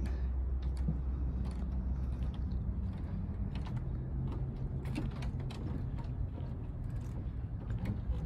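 A steady low mechanical hum with scattered light clicks and creaks.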